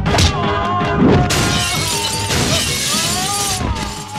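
Film fight sound effects over a dramatic background score: a sharp hit at the start and another about a second in, then a long crash of shattering glass lasting about two seconds.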